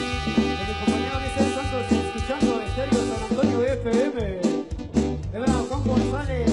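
Live marimba orchestra playing tropical dance music, with bass guitar, keyboard and percussion on a steady beat. The bass drops out about four seconds in and comes back a second later.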